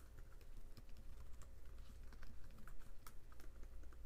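Typing on a computer keyboard: a quick, irregular run of light keystrokes.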